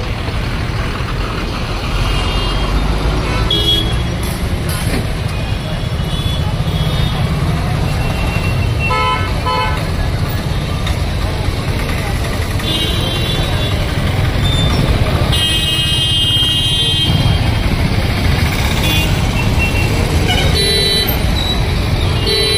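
Street noise of a crowd and traffic: a steady low rumble with a mix of voices, broken by vehicle horns honking several times, the longest blast about two-thirds of the way through.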